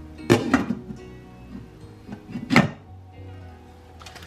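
Glass lid set down on a stainless steel saucepan with a sharp clank just after the start, then a second, louder knock of cookware about two and a half seconds in, over soft background music.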